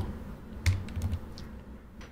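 Computer keyboard being typed on: a few separate keystrokes.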